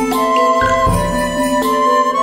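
Instrumental background music: a slow melody of held notes over sustained, changing bass notes.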